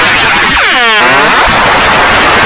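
Very loud, heavily distorted edit-effect noise, a harsh sustained blare. In the middle of it a pitched tone sweeps down and back up again.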